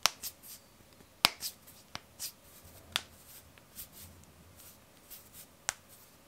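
Finger knuckles cracking: five sharp pops at uneven intervals, the loudest about a second in. Softer rustles of hands rubbing and shifting come between the pops.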